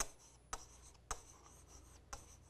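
Stylus writing on an interactive display screen: three faint sharp taps about half a second apart, with light rubbing of the pen tip between them.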